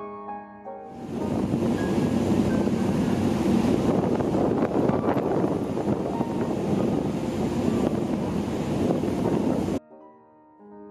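Wind buffeting the microphone and rushing water from a boat moving along the shore: a loud, steady rushing noise. It starts about a second in, after piano music dies away, and cuts off suddenly near the end.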